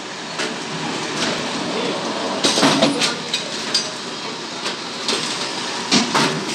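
Bottle packaging line running: a steady mechanical din from the conveyor and seal-and-shrink machine, with irregular knocks and clatter from plastic water bottles being pushed along, busiest a little before halfway through.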